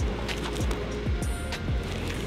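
Burning fire poi whooshing in rhythmic swings, about two passes a second, with music in the background.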